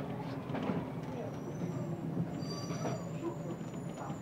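Inside a city bus: the low engine drone and the rattling of the body and fittings as the bus brakes to a halt at a stop, with a faint high squeal over the second half as it stops.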